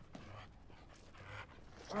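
Faint sounds of a dog, low in level.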